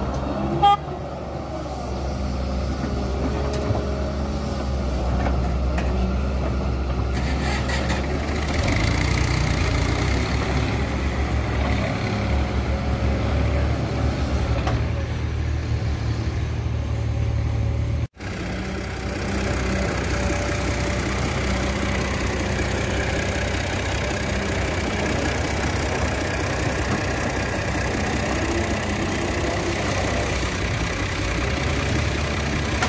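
Doosan 140W wheeled excavator's diesel engine running steadily as it digs and loads soil, the engine note getting heavier under hydraulic load from about a third of the way in. A short loud knock comes about a second in, and the sound cuts out for an instant just past halfway.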